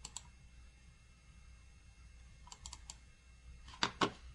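Faint clicking at a computer: one click at the start, a quick run of about four clicks about two and a half seconds in, and a louder click near the end, over a low steady room hum.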